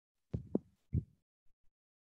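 A few short, soft low thumps: three close together in the first second, then two fainter ones about half a second later.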